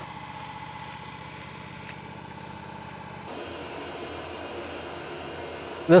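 An engine idling steadily, a low even hum with a faint steady whine. About three seconds in, the sound shifts, with the low hum weakening and a hiss coming in.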